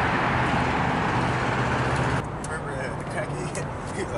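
Steady road traffic noise with a low engine hum, which cuts off abruptly about two seconds in, leaving quieter outdoor background with a few faint clicks.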